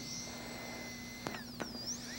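High-speed air turbine dental handpiece whining with its air-water coolant spray on. A little over a second in its pitch falls as it slows, with a couple of sharp clicks. Near the end the pitch rises again as it spins back up.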